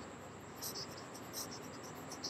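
Faint background with a steady high-pitched whine and a few short high-pitched chirps.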